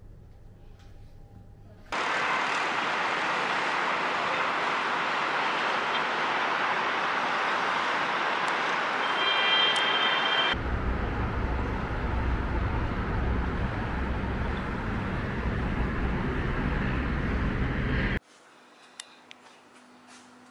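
Steady wash of city traffic noise heard from high above the road. It cuts in suddenly about two seconds in and cuts off near the end. A brief high-pitched tone sounds about nine seconds in, and from about halfway a deeper rumble joins the noise.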